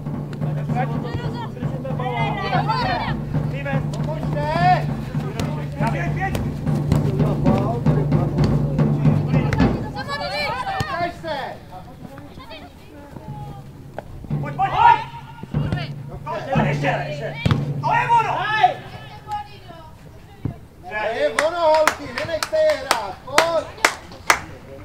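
Players and coaches shouting across a football pitch during play. A low steady hum runs under the voices for the first ten seconds and returns briefly later, and a few sharp knocks come near the end.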